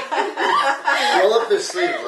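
People talking and chuckling.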